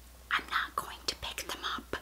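A woman whispering a few breathy words, much quieter than her normal speaking voice.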